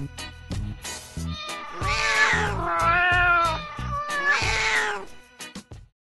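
A cat yowling: three drawn-out, wavering calls that rise and fall in pitch, with music underneath.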